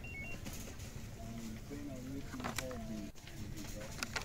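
Store ambience with faint voices talking in the background, and a brief high electronic beep right at the start.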